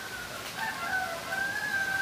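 A rooster crowing, faint and drawn out, starting about half a second in.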